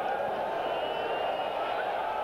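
Stadium crowd noise under a televised football play: a steady, even hum of many voices.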